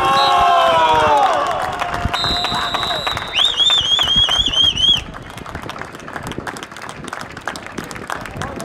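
Players' shouts at the start, then a referee's pea whistle: a steady high blast about two seconds in, followed by a longer warbling blast that cuts off at about five seconds. These are the final whistle ending the football match.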